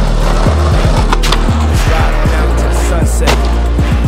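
Skateboard wheels rolling over rough asphalt, mixed with music that has a heavy bass line.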